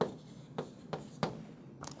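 Chalk writing on a chalkboard: about five short, sharp taps and scratches of the chalk against the board, fairly quiet.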